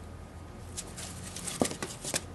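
Corrugated cardboard sheets crackling and scraping as a metal tactical pen stuck through the stack is pulled and the sheets are lifted apart: a short run of rustles and clicks starting a little under a second in, the sharpest about a second and a half in.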